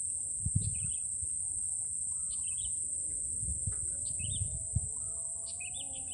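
A bird gives short chirping calls, about five of them, over a steady high-pitched drone of insects.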